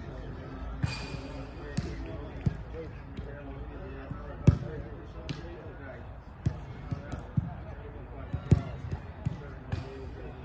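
Footballs being kicked during practice on an artificial-turf pitch: about a dozen sharp thuds at irregular intervals, the loudest about four and a half seconds in and near eight and a half seconds.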